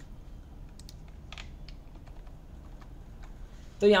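A few soft, scattered computer keyboard key clicks, one a little louder about a second and a half in.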